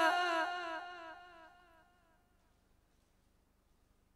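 The echo of a man's melodic Quran recitation fading away after his last phrase, dying out about a second and a half in, followed by near silence.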